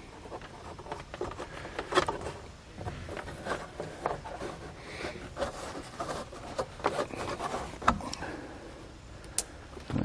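Hands working electrical wires into a small wire connector against a truck's headliner: light rubbing and rustling with a few short clicks.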